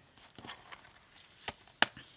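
A ring binder of cash envelopes being handled and shut: faint rustling and a few light taps, then one sharp click near the end as it closes.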